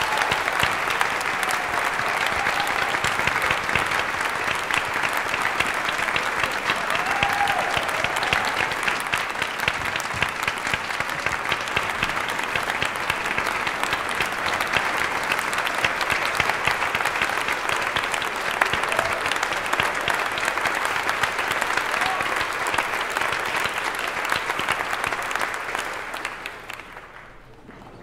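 Audience applauding steadily, a dense patter of many hands clapping, which dies away about a second before the end.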